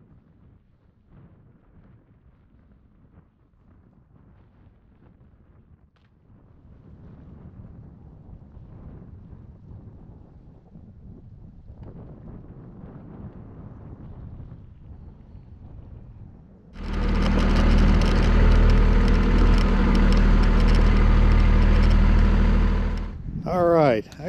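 An engine running steadily at one speed, starting abruptly about seventeen seconds in and cutting off about a second before the end. A quieter low rumble comes before it.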